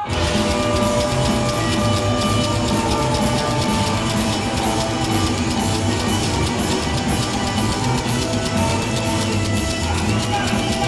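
Rockabilly band playing live with upright double bass and electric guitars, kicking in suddenly at full volume and running on at a steady driving level.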